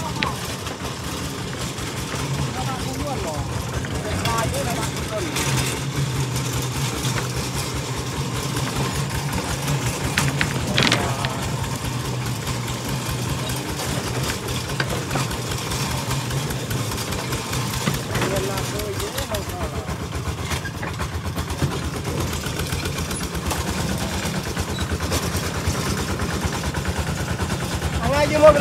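Single-cylinder diesel engine of a two-wheel walking tractor running steadily under load as it pulls a loaded trailer, its firing beats fast and even. There is a sharp knock about eleven seconds in.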